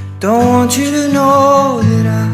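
Mellow acoustic pop song: a singer holds one long note from just after the start until near the end, over strummed acoustic guitar and steady low chords.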